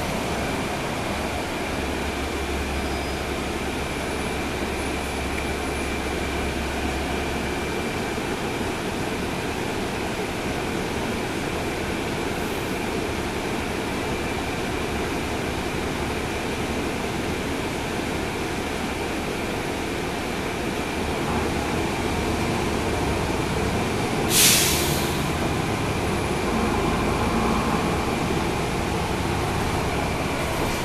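Cabin noise from the rear of a 2012 NABI 40-SFW transit bus on the move: its Cummins ISL9 diesel engine running with steady road noise and a thin high whine, a low rumble in the first few seconds and again late on. A brief sharp hiss about three-quarters of the way through is the loudest moment.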